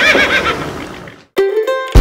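A horse whinny, a wavering high cry that dies away over about a second. After a brief silence, music starts near the end.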